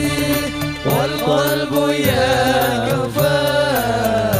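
Male voices singing a sholawat (Islamic devotional song in Arabic) into microphones, with long gliding melodic lines, over a steady instrumental accompaniment.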